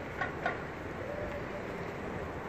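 Outdoor street ambience: a steady low rumble of traffic and wind, with two short, higher sounds about a quarter and half a second in.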